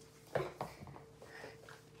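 A dog jostling against a person on a wooden floor: a sudden thump about a third of a second in, then softer knocks and shuffling.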